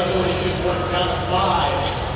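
A man's voice commentating, heard through an arena's public-address sound.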